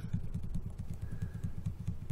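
Faint engine note of a racing car, heard as a low, rapid, even pulsing.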